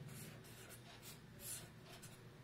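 Pen drawing short lines on paper: a few faint strokes.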